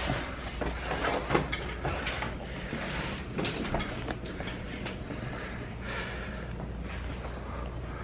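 Footsteps and the rubbing of clothes and backpack straps against a handheld camera while walking through a house. There is a run of knocks and scuffs in the first few seconds, then steadier rustling over a low hum.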